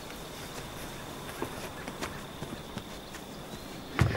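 Quiet outdoor ambience with a few faint, scattered clicks and a thin steady high tone in the background.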